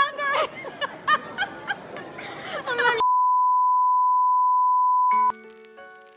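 People talking indistinctly in a busy hall, cut off abruptly by a single steady electronic beep that holds one pitch for about two seconds; as it ends, background music with held keyboard notes begins.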